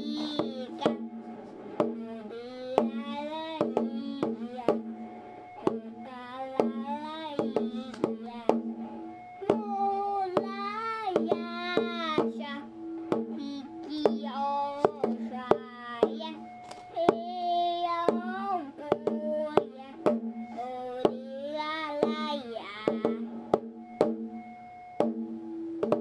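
A voice singing a slow melody over a steady, low held tone, with sharp percussive clicks keeping a beat about once or twice a second: a song its singer called a Japanese New Year's song.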